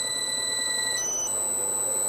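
Centrifuge's AC motor spinning up on a variable-speed drive controller, giving a steady high-pitched electronic whine of several pure tones that jump to a higher pitch about a second in as the rotor speed ramps up.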